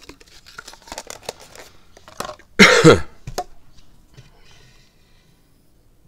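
A person coughing once, loudly, about two and a half seconds in, with a smaller follow-up a moment later, after a run of light scratchy clicks.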